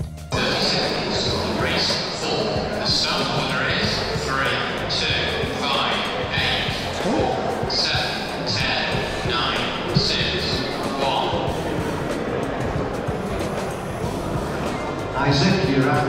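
Indistinct voices echoing in a large indoor hall, with music underneath. There is a single sharp click about ten seconds in, and a closer man's voice starts near the end.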